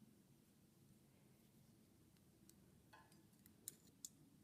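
Near silence: faint room tone, with a few faint clicks and one short sharp snip near the end from scissors cutting crochet thread.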